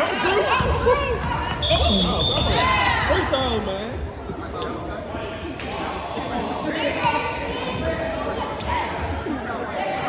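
A basketball bouncing on a hardwood gym floor during a young children's game, with voices calling out and echoing in the large gym.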